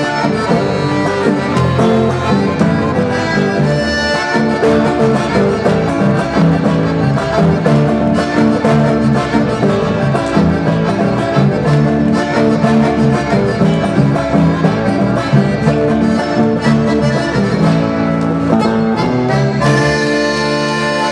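Live chamamé played on accordion with acoustic guitar accompaniment, an instrumental passage with no singing.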